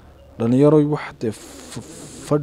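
A man's voice holding a drawn-out, level filler sound, then a breathy hiss near the end.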